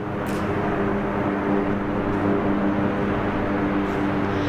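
Steady street traffic noise with a low mechanical drone holding one pitch throughout, slowly growing a little louder.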